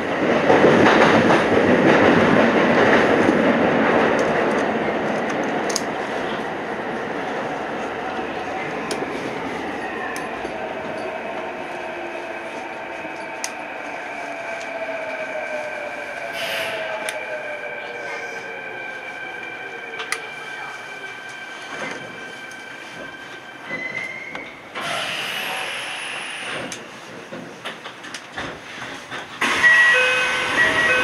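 A Kintetsu electric train braking into an underground station, heard from the cab. The rolling noise is loudest in the first few seconds and then fades. From about 8 to 20 seconds in, the traction motors whine on several tones that fall in pitch as the train slows. A short burst of air hiss comes about 25 seconds in as the train comes to a stop.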